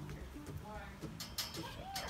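Quiet, indistinct speech fragments, with a few brief hissing sounds about a second in.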